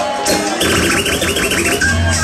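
DJ scratching a record over a hip-hop beat played through the club's sound system: a run of quick scratch strokes, about seven a second, starts about half a second in as the bass comes in.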